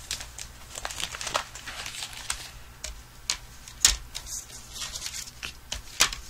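Paper, cardstock and a clear plastic embossing folder being handled and set down on a craft desk: light rustling with scattered taps, the sharpest about four seconds in.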